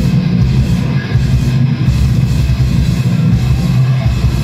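Death metal band playing live, electric guitar and bass guitar riffing loudly in a low register.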